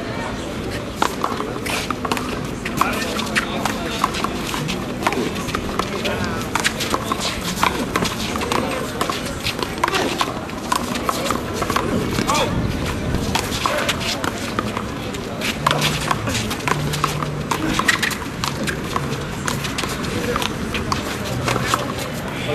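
One-wall handball rally: repeated sharp smacks of the ball off players' hands and the wall, over voices of people talking.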